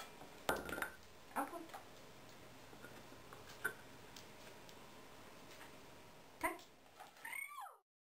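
A dog-training clicker clicking several times, a few seconds apart, while a husky works with a toy. Near the end the husky gives a short high whine that falls in pitch, and then the sound cuts off.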